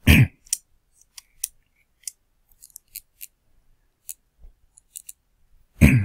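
A short thump right at the start, then about a dozen light, scattered clicks and taps of a stylus on a tablet screen while a box is drawn by hand.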